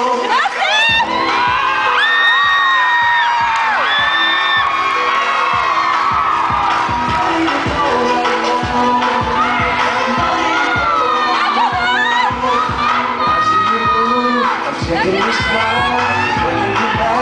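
Hip-hop dance music with a steady beat playing loudly, while a crowd of students cheers and shouts over it.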